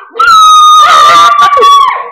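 A child's long, loud, high-pitched squeal, held for about a second and a half and sinking slightly in pitch before it breaks off.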